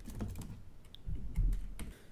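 Typing on a computer keyboard: irregular key clicks, with a cluster of louder ones about a second and a half in.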